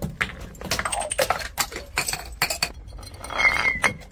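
Bottles tumbling down concrete steps: a rapid, uneven run of knocks and clinks as they bounce from step to step, with a louder noisy burst near the end.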